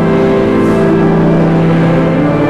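Church hymn holding its long final note: the singers and accompaniment sustain a steady chord.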